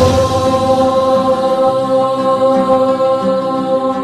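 Closing of a devotional chant track: a long held drone with a few sustained pitches over slowly shifting low notes, gradually fading.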